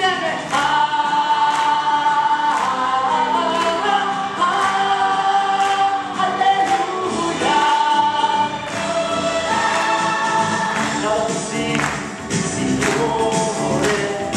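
A stage cast singing together as a choir, holding long notes over an instrumental accompaniment with a steady beat.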